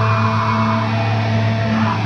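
Band playing loud, droning rock live: held guitar notes over a steady low note.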